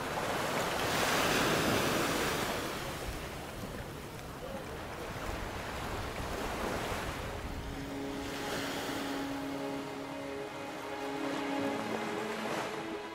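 Small waves washing onto a sandy beach, surging and ebbing in slow swells, with wind on the microphone. Background music with steady held notes fades in during the second half.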